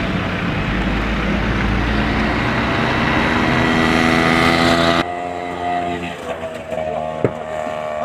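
A car engine running and rising steadily in pitch as it accelerates, then cut off suddenly about five seconds in, leaving a quieter steady engine hum.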